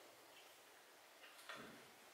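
Near silence: room tone in a pause between words, with one faint, short sound about one and a half seconds in.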